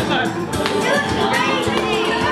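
Dance music playing under a lively mix of excited voices.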